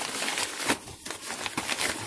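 Wrapping paper crinkling and rustling around a solid model-ship hull as it is handled in a cardboard box, with irregular crackles and light knocks.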